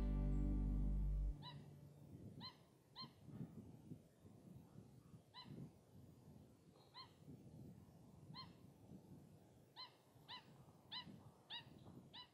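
Background music stops abruptly about a second in. Then faint outdoor ambience follows, with about a dozen short animal calls, each a quick rising note, scattered irregularly and coming closer together near the end.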